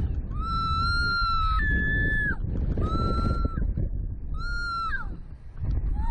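Riders on a slingshot ride screaming: four long, high-pitched held screams, each about a second, the last ending about five seconds in. Wind rushes over the on-board microphone underneath.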